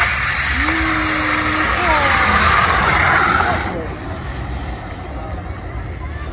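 A car launching hard from the start line with its tyres spinning on asphalt: a sudden loud rush of tyre noise for nearly four seconds, then dying away, with shouts from the crowd over it.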